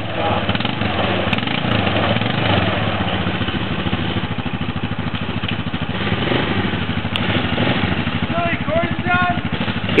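ATV engine idling steadily, with a few short, voice-like rising sounds near the end.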